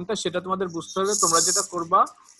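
A man speaking, lecturing. A hiss overlaps his voice for most of a second past the middle.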